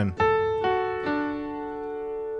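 Piano playing three notes of a D major chord one after another, about half a second apart, left to ring and slowly fade.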